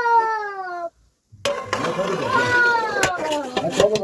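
Cat meowing: a long meow falling in pitch that ends about a second in, then after a short pause a second, rougher meow that also falls.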